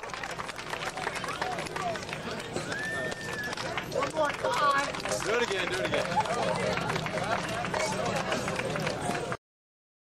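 Outdoor crowd chatter: many voices talking and calling out over one another, with a dense patter of small clicks underneath. The sound cuts off abruptly to silence about nine seconds in.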